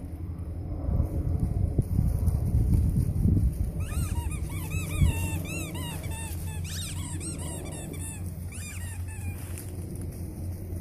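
A horse cantering on a wood-chip arena, its hoofbeats thudding under a low rumble of wind on the microphone. From about four seconds in, an animal's high, squeaky calls come in quick runs of several a second for about five seconds.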